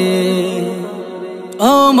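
A Bengali Islamic devotional song (gojol) being sung. A long held note tails off, then the next line begins with a rising slide near the end.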